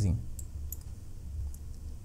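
A few faint, sharp computer-mouse clicks while an arrow is drawn on a slide, over a low steady hum.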